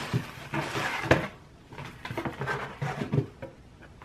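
A package being opened by hand: scattered rustling and handling of the packaging, with a sharp knock about a second in.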